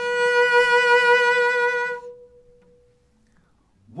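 Cello bowing one sustained high B (B4, about 494 Hz) with vibrato, held for about two seconds and then left to ring away.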